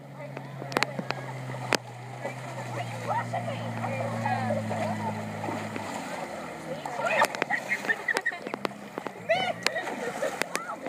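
A jet ski's engine running as it comes in toward shore, its steady hum rising a little in pitch and then cutting off about six seconds in. Excited girls' voices and a shriek follow, with some splashing in the shallows.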